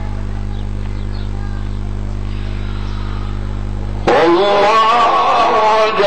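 A steady low hum for about four seconds, then a male reciter's voice comes in suddenly and loudly, chanting Quran recitation in long melismatic phrases.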